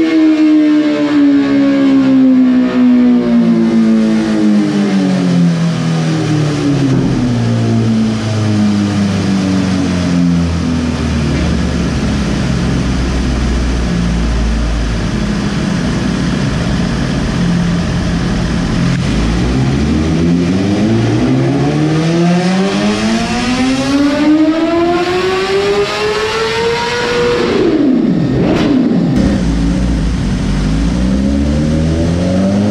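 2020 BMW S1000RR's inline-four running on a chassis dyno in fifth gear: the engine note falls steadily as the speed rolls off, holds low for a few seconds, then climbs again under throttle and drops away sharply near the end.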